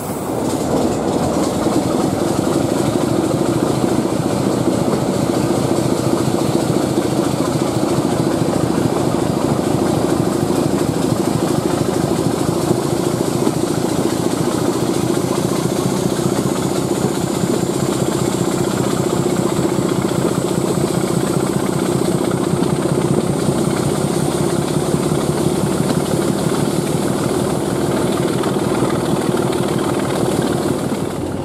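Diesel multiple unit running along the line, heard from a window on board: a steady engine drone and rumble of wheels on the rails. A thin high whine rises slowly in pitch through the second half.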